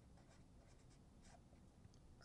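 Faint scratching of a felt-tip Crayola marker writing a short word on paper, in a few light strokes.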